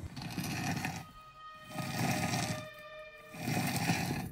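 Eerie horror sound effect: three swelling waves of rough, rumbling noise, with steady ringing tones held between them. The effect stands for the mysterious noise in the woods growing louder.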